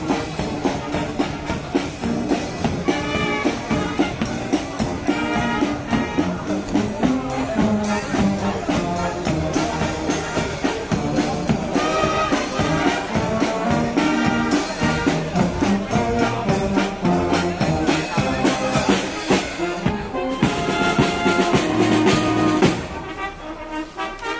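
Music led by brass instruments, with trumpets and trombone over drums, playing steadily; it dips briefly about a second before the end.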